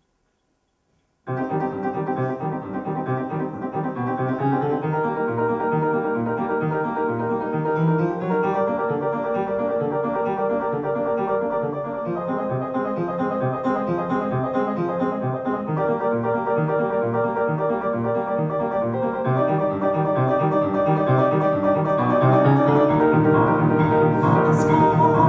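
Solo piano playing a song's introduction, starting after about a second of silence and growing a little louder near the end.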